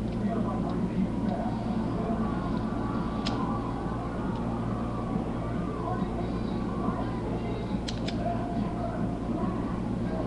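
Steady low electrical hum and hiss, with a few short sharp clicks: one about a third of the way in and two close together near the end.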